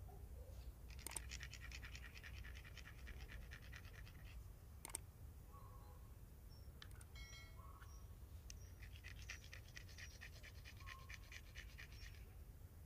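A small flat stone rubbed quickly back and forth against a larger rough stone, in two bouts of fast, even scraping strokes with a pause between them: the small stone is being ground round.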